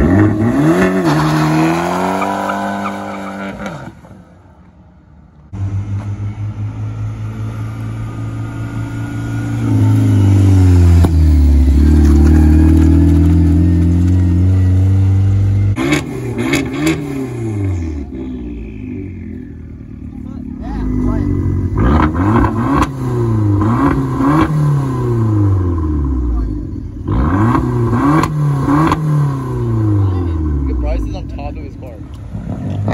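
Fiat 500 Abarths with aftermarket exhausts: an engine revving up and back down, then running at a steady low drone, then a series of quick free-revs about one a second while parked.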